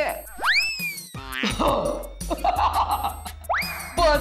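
Comic sitcom sound effects over background music: a sharp upward-sweeping whistle-like glide about half a second in that tails off slightly, a falling wobble after it, and another quick rising glide near the end.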